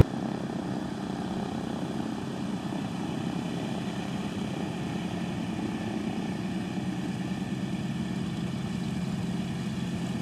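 Douglas C-47's twin Pratt & Whitney R-1830 radial engines and propellers running steadily as the aircraft taxis, a low rumble with a fast, even pulse.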